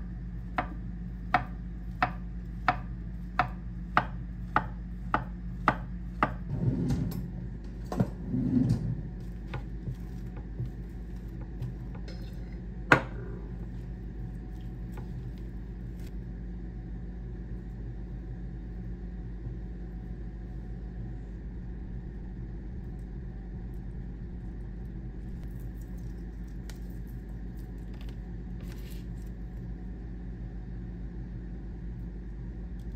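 A kitchen knife slicing a peeled banana on a wooden cutting board, the blade knocking the board about eleven times at a steady pace of roughly one and a half cuts a second for the first six seconds. A few short scrapes follow, then one sharp knock, then a steady low hum.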